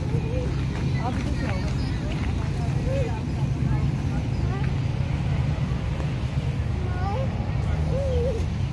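Outdoor ambience: a steady low rumble under short, scattered chirps and faint distant voices.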